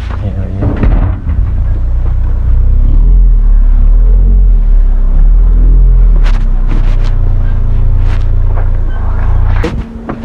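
Wind buffeting the camera's microphone: a loud, low rumble that builds about two seconds in and holds, with a few sharp clicks in the second half.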